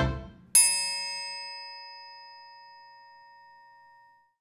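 The end of an outro music sting: the last drum hits die away, then a single bell-like chime strikes about half a second in and rings out, fading slowly over about three seconds.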